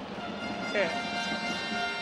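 Game noise in a basketball gym under a commentator's brief "eh". A steady hum runs beneath it.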